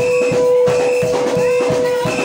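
Live church band music: a drum kit keeps a quick, even beat under a single note held throughout, with short high notes repeating about twice a second.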